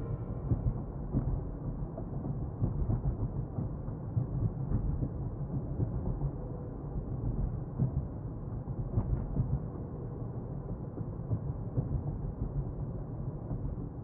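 Low, steady rumble of a car being driven, heard from inside the cabin, with a few faint knocks.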